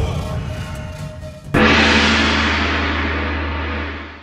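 A short noisy musical lead-in, then a gong struck once about a second and a half in, ringing on loudly and slowly dying away.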